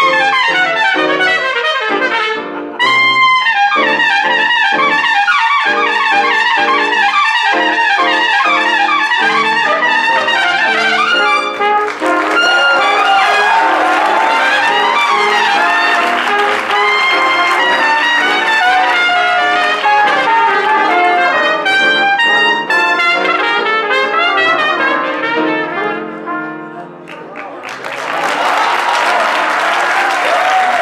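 Piccolo trumpet playing a fast, high jazz solo over accompaniment, joined by several other trumpets about halfway through in a dense ensemble passage. The music stops near the end and gives way to applause.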